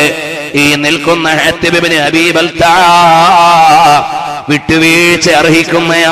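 A man's voice chanting in long held, melodic phrases with a wavering pitch, with short breaks between phrases about half a second in, near the middle, and again around four and a half seconds in.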